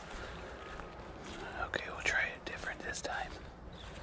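A man's voice, hushed to a whisper, for about two seconds in the middle, with a few soft footsteps in dry grass and leaves.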